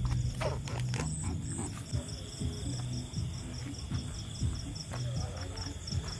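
Crickets chirping in a steady, evenly pulsed rhythm. In the first two seconds there are rustles and knocks from a handheld phone being swung through grass.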